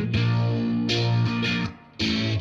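Electric guitar, a Fender Stratocaster, played through an amplifier: a few chords strummed and left ringing, with the sound dropping away sharply just before the next chord.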